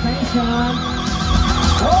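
Music with a high, rapidly quavering held note, over a steady low rumble and some voice-like gliding tones.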